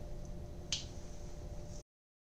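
Quiet room tone with a low hum and one short, sharp click about three-quarters of a second in; the sound then cuts off to dead silence near the end.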